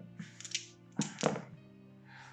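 A handful of six-sided dice landing with a few soft thuds and settling on a cloth gaming mat, over steady background music.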